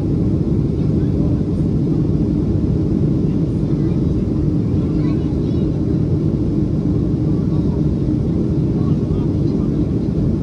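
Steady low drone inside an airliner cabin in flight: engine and airflow noise, even and unchanging, with faint voices of other passengers.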